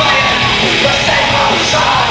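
Live pop-punk band playing loud and full with electric guitars, bass and drums, a vocalist yelling and singing over it. Heard from among the crowd in a large hall, the mix is dense and boomy.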